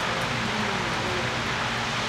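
Steady room noise in a pause between speech: an even hiss with a low hum underneath.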